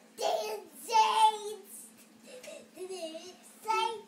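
A young child singing in short high phrases with few clear words, loudest about a second in, with quieter phrases after.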